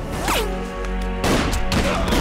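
Film soundtrack: dramatic background music with a downward-swooping effect near the start, then, about a second in, a dense rapid rattling crackle over the music.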